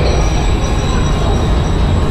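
Trenitalia Vivalto double-deck regional train running past along the platform close by: a loud, steady rumble of wheels on rails with thin, steady high-pitched wheel squeal over it.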